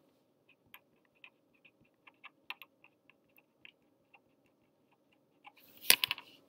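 Felt-tip pen writing a word on paper: a string of faint, short taps and scratches of the tip. Near the end, a louder brief rustle of the paper sheet being shifted.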